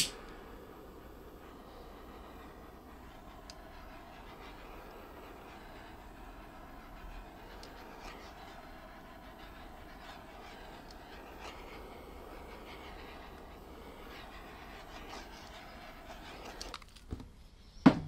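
Small handheld torch flame burning with a steady hiss as it is passed over wet acrylic pour paint to pop surface bubbles. It cuts off near the end, followed by a few light clicks.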